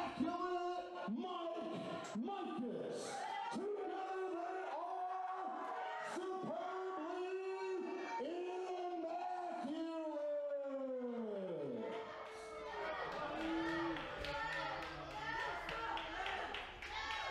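A voice shouting drawn-out, repeated calls in a large hall, ending in a long falling cry about ten seconds in. A general crowd din takes over near the end.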